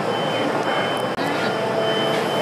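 Repeated electronic beeping: a high, steady tone sounding about three times, each beep roughly a third of a second long, over background room noise.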